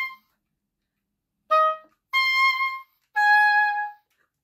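Solo oboe playing a short detached phrase: a note ending just after the start, then three separately tongued notes with short gaps, the last one lower. Each note starts with a crisp pop from air pressure built up behind the tongue resting on the reed, giving the accented attack.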